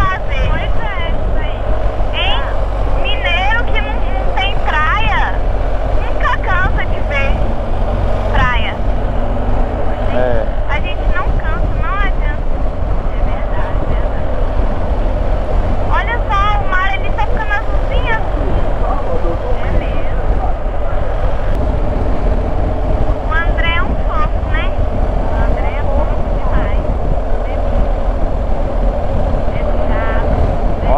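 Motorcycle engine and wind noise on a steady cruise at around 55 km/h, a continuous drone with rumble underneath, and short bits of wavering voice-like sound over it.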